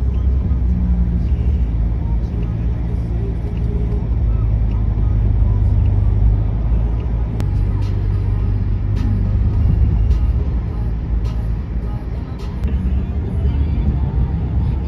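Road and engine noise inside a moving car, a steady low rumble.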